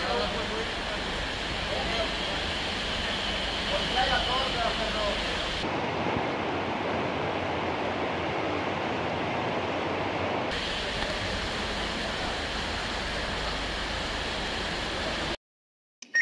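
Steady rushing of river water, with faint distant voices in the first few seconds. The sound cuts off suddenly near the end.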